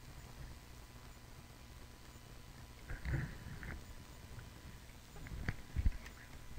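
Faint handling noises of an iPod and its cable: a short soft scuffle about three seconds in, then a few sharp knocks near the end over a low steady background hum.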